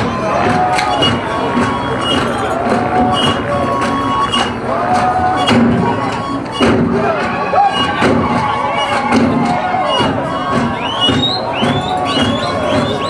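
Live Zulu dance music: a group of voices chanting short repeated phrases over a beat of sharp thuds, with the crowd cheering. High rising calls come in near the end.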